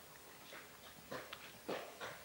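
A woman's faint voice: a few short, quiet vocal sounds about a second in and again near the end, between stretches of near quiet.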